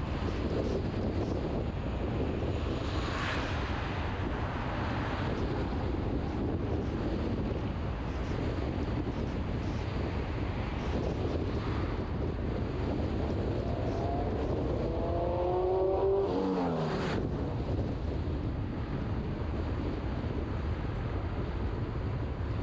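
Steady road and wind noise from a car driving through town. About three-quarters of the way through, an oncoming motorcycle passes, its engine note rising and then dropping sharply as it goes by.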